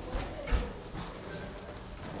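Two dull knocks about half a second apart, the second louder, then low room noise.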